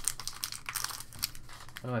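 Silver foil wrapper of a 2019 Upper Deck Marvel Flair trading card pack crinkling and tearing as it is pulled open by hand, a run of small crackles.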